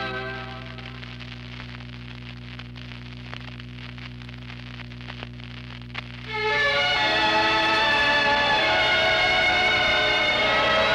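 A gap between recordings on an old reel-to-reel tape: a steady low electrical hum with faint scattered clicks and crackles, and a sharper click about six seconds in. Music with sustained notes starts again about six and a half seconds in.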